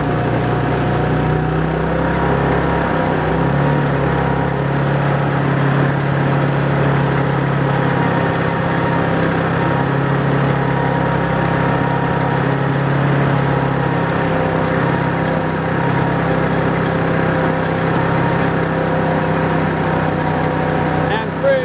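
Scooter-tow winch engine running steadily at an even pitch, its pull held back to tow a hang glider low.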